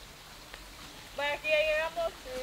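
A high-pitched voice calling out briefly near the end, over faint outdoor ambience.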